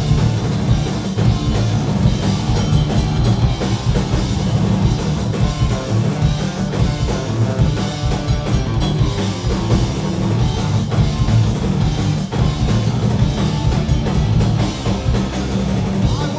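Punk rock band playing live on electric guitars, bass and a drum kit, a loud instrumental stretch without vocals.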